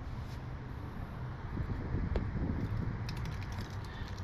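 Low steady outdoor background noise with a faint click about two seconds in and a few light ticks a little after three seconds, like small handling noises.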